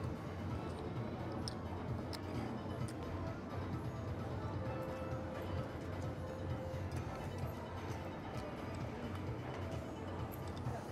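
Casino floor ambience: a steady din with background music, and a few sharp clicks of casino chips being set down on the table about one and a half to three seconds in.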